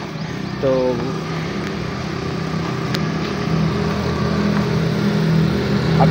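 A steady low engine hum from a nearby motor vehicle, slowly getting louder.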